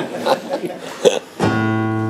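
A chord strummed on an acoustic guitar about one and a half seconds in, left ringing steadily. Before it, a short spoken word and a laugh.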